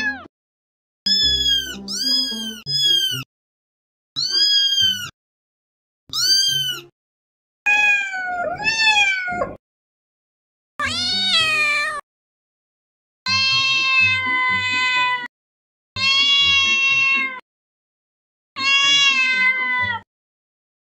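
Cats and kittens meowing: about ten separate high-pitched meows, each rising then falling in pitch, with dead silence between them. Two of the meows, in the middle and latter part, are long and drawn out.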